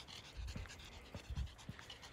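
A dog panting faintly, with light irregular thumps from walking.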